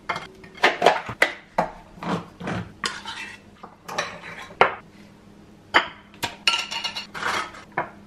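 Kitchen counter clatter while a sandwich is assembled: irregular clinks and knocks of a plate, bread being set down and a plastic bag handled, with a spoon knocking in a glass pesto jar near the end.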